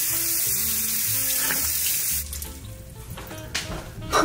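Tap water running steadily into a bathroom sink while a face is rinsed; the water shuts off about two seconds in.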